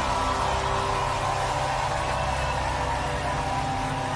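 A large open-air crowd cheering and clapping as the rock band's last chord rings on.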